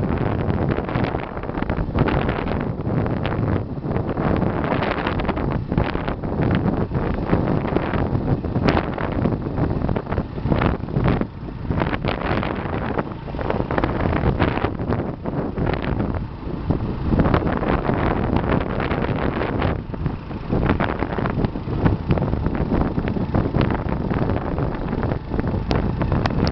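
Wind noise on the microphone of a moving motorbike, rising and falling unevenly, over the bike's running engine and road noise.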